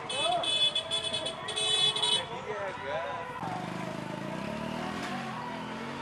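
Street traffic: a shrill vehicle horn sounds twice in the first two seconds, then a motor vehicle engine runs with a low hum, under faint voices.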